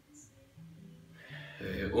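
A man's low, steady hum from his closed mouth as he tastes a sip of sparkling wine, with speech starting near the end.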